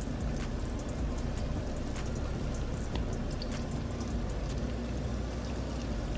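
Flour-coated chicken pieces frying in hot oil in a skillet: a steady sizzle dotted with many small crackles and pops.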